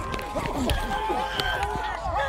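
Several football players and coaches shouting and calling out over one another, with a few sharp knocks and the low thuds of running feet on a body mic.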